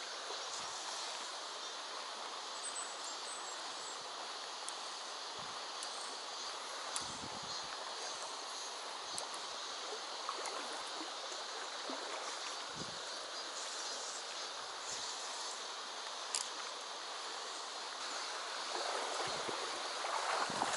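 Shallow river running steadily over a stony riffle, an even rushing hiss, with a few faint brief clicks.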